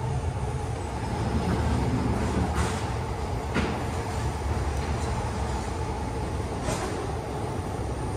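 Steady urban street ambience with a continuous low rumble of traffic, with a few faint clicks.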